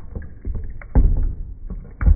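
Shallow water sloshing and splashing as a toy hippo figure is pushed through it by hand, with a few small knocks and a louder surge about halfway through.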